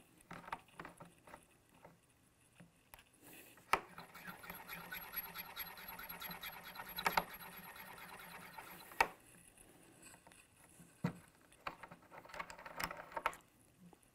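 Forster Original Case Trimmer's 3-in-1 cutter hand-cranked against a brass rifle case mouth: a fine, rapid scraping chatter for about five seconds as the case is trimmed to length and chamfered. Light clicks of the case being clamped in the collet and released come before and after it.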